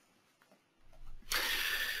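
A pause in a presenter's speech: near silence for almost a second, then faint low microphone hum and a soft hiss of breath drawn in just before the talk resumes.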